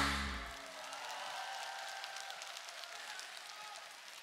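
The stage band's last chord dies away in the first half-second, then a large audience applauds, fairly quietly.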